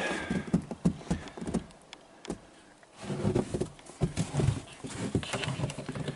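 Irregular knocks and footsteps of boots on a wooden cabin deck, pausing into quiet for about a second near the middle before starting again.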